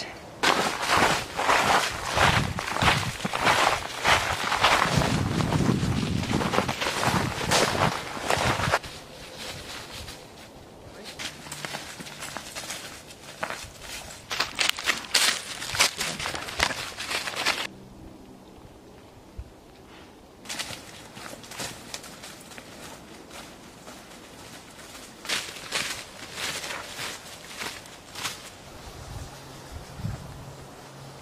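Footsteps crunching and rustling through dry fallen oak leaves on a forest floor, dense and loud for about the first nine seconds, then softer and more scattered.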